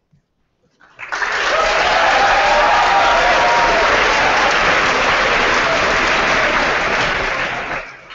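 Audience applauding, starting about a second in, holding steady, and dying away near the end.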